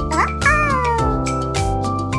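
A cartoon cat's meow sound effect, one call rising and then falling in the first second, over background music with a steady beat.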